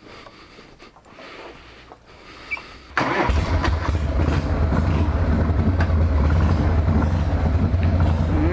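A 1979 Harley-Davidson FXS Shovelhead's 80-cubic-inch V-twin starts abruptly about three seconds in. It then keeps running with a loud, steady low rumble.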